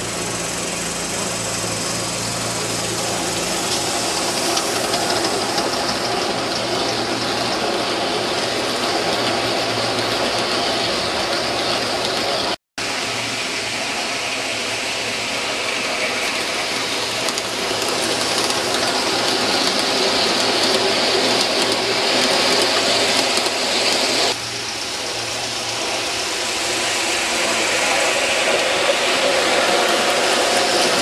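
A live-steam garden-scale locomotive running with a train of passenger cars, giving a steady hiss and running noise of wheels on track. The sound cuts out for a moment about a third of the way in and shifts again near the end as the shot changes.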